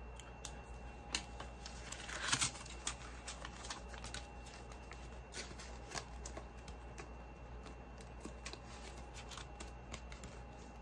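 Plastic binder pockets and paper banknotes rustling and crinkling as they are handled and flipped through, with scattered small clicks. The loudest rustle comes a little over two seconds in.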